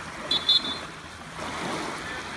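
Small lake waves washing on the shore, a steady rush of water that swells near the end. About half a second in come two brief high chirps, the loudest sounds here.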